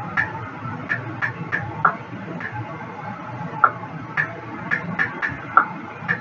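About a dozen irregular small clicks and taps from hands handling a gift necklace and its case and wrapping, over a low steady hum.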